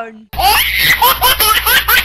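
A high-pitched laugh sound effect: one voice laughing in a quick string of short rising 'ha' bursts, about six a second, over a steady low hum. It starts just after a short pause.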